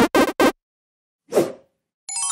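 Video-game-style intro music stutters in two short fragments and cuts off. After a gap a single short cartoon pop plays as an editing sound effect.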